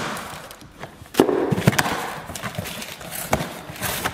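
Cardboard box flaps being pulled open and handled: rustling and scraping of cardboard with a few sharp knocks, the loudest about a second in.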